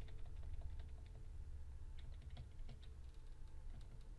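Faint, irregular light clicks, like typing or tapping on a device, over a low steady hum.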